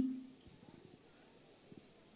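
Near silence: faint background hiss after the tail of a child's amplified line dies away in the first moment, with a couple of faint soft knocks.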